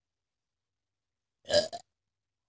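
A girl lets out one short, throaty "ugh" that sounds like a burp, about one and a half seconds in. Before it there is near silence.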